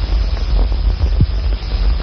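Steady low hum with faint hiss, the background noise of an old recording, with no distinct event.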